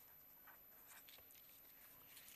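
Near silence, with the faint, intermittent scratching of a pen writing on paper.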